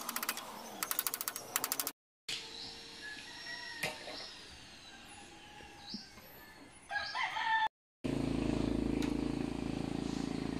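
A rooster crows about seven seconds in and breaks off suddenly, over faint small-bird chirps. The first two seconds hold a quick run of rattling clicks, and the last two a steady low hum.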